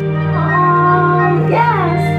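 Music with a high-pitched singing voice that holds a note and then slides down near the end.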